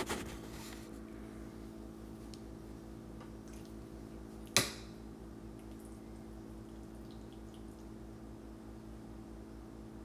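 Steady low electrical hum in a kitchen, with one sharp clink about four and a half seconds in.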